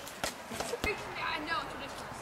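Two sharp slaps, about a quarter second and just under a second in, as a small football is caught in hands during a game of catch, under faint kids' voices.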